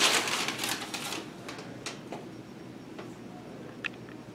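A sheet of paper rustling and crackling as it is grabbed off the floor and handled, loudest in the first second, then a few faint light clicks.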